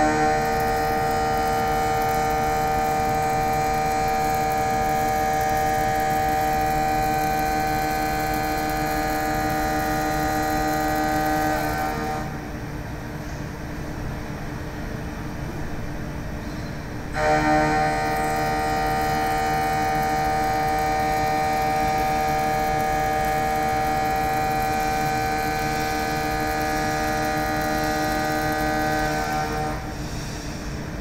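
Mitsubishi VPX indexable end mill side-milling SCM440 alloy steel at 2300 rpm, cutting with a steady ringing tone of several pitches. The cut drops out for about five seconds about twelve seconds in, leaving a lower machine hum, then resumes just as steady for the next pass.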